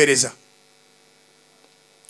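A man's amplified voice trails off in the first moment, then a pause in which only a faint, steady electrical hum from the microphone's sound system is heard.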